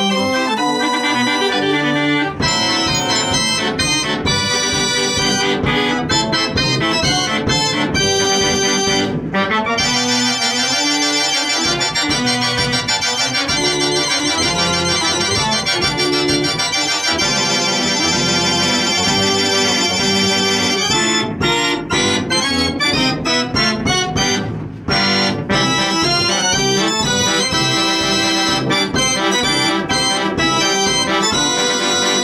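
A. Ruth & Sohn 36-key fair organ (Ruth 36) playing a tune from its folding cardboard music book: dense, loud band-organ music from its pipes, with brief drop-outs in the middle.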